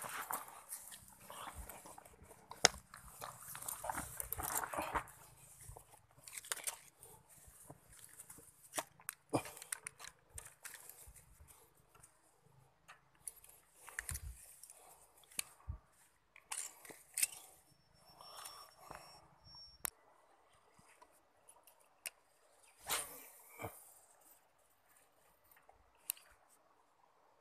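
Quiet, irregular rustling on grass with scattered sharp clicks and taps, from a freshly landed hampala and an ultralight spinning rod and reel being handled.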